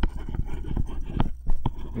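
Stylus tip tapping and scratching on a tablet screen while handwriting: a quick, irregular run of light clicks.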